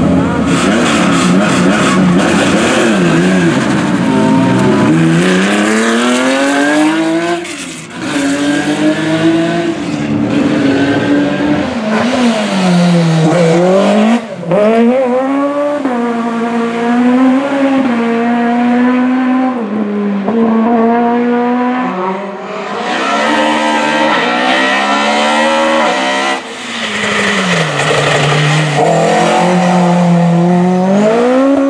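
Race car engines, several cars in turn, accelerating hard up through the gears: the engine note climbs steeply in each gear and drops back at every upshift, over and over.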